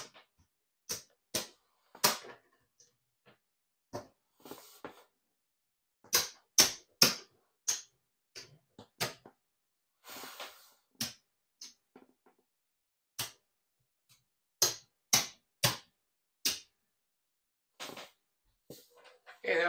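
Casino chips clicking as they are picked up, stacked and set down on a craps table: a run of separate sharp clicks with pauses between, some in quick pairs or clusters, and a short soft sliding sound about ten seconds in.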